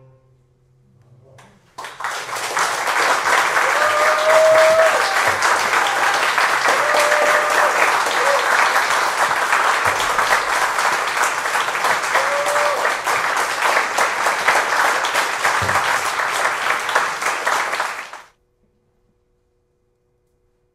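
Audience applause that starts about two seconds in, after a short hush, with a few voices calling out over it, and stops abruptly near the end.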